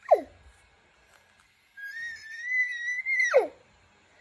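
A toddler's high, whistle-like imitation of an elk bugle. A short squeal falls steeply at the start, then a long high whistled note is held and drops off steeply near the end.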